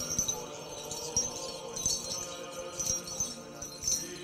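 Small bells jingling in repeated bright shimmers over faint, held chanting notes.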